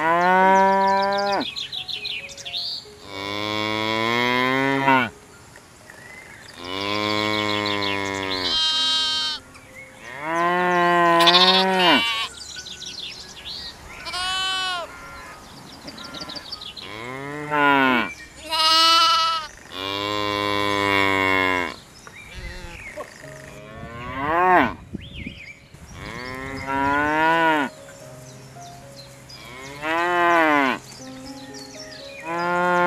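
Cattle mooing, one call after another, about a dozen calls with short pauses between them. Some calls rise and fall in pitch.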